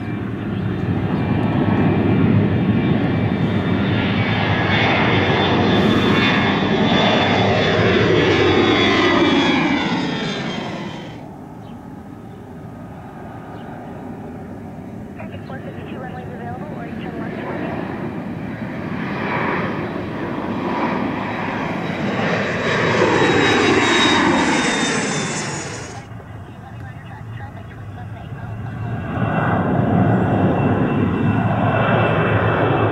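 Jet airliners passing low overhead on their takeoff climb, engine noise falling in pitch as each one goes by. First an Airbus A320-family twinjet, then a rear-engined twinjet from about 11 s in, then a Boeing 737 near the end. The sound cuts off suddenly at each change of aircraft.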